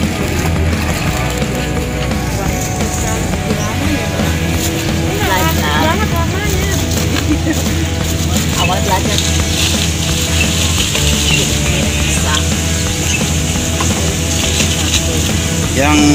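Water pouring and splashing into a tub of live fish, over steady background music and the chatter of a busy market.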